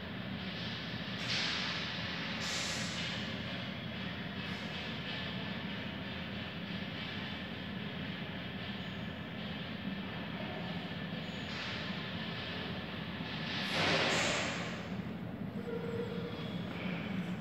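A steady mechanical rumble with a low hum under a noisy hiss, swelling louder briefly about a second in and again near the end.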